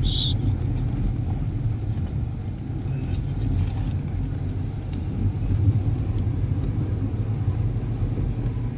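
Steady low rumble of a car driving, heard from inside the cabin: engine and tyre noise on a wet road.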